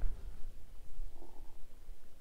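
Low, uneven rumble of wind buffeting the microphone on open water.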